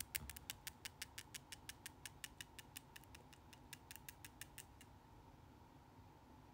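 A rapid, even series of light, sharp clicks, about five a second, growing a little fainter and stopping about five seconds in.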